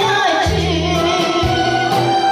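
A woman singing a Korean song through a microphone, holding long wavering notes over amplified backing music with a bass line and a drum beat about twice a second.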